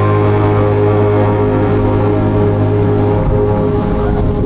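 Live indie band holding a sustained chord as the song ends: a steady low bass note under held keyboard and guitar tones, ringing on without a beat.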